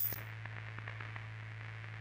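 A steady low electrical hum with faint, scattered crackles, opening with a brief sharp burst and hiss.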